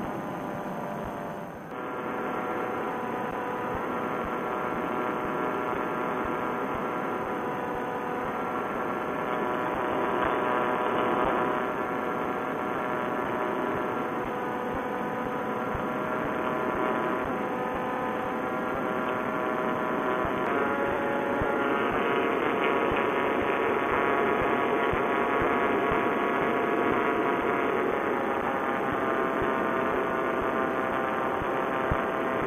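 Vittorazi Moster single-cylinder two-stroke paramotor engine and propeller running steadily in cruise flight, a continuous droning note. The engine note shifts slightly about two-thirds of the way through, as the throttle changes. The sound is muffled, with no treble.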